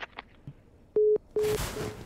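Telephone busy/disconnect tone in the handset after the other party hangs up: three short, steady low beeps about 0.4 s apart, starting about a second in, with a burst of noise over the later beeps.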